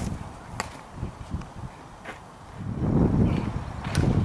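A baseball popping sharply into a catcher's leather mitt about half a second after the pitch is released. Near the end, a rumbling low noise comes in.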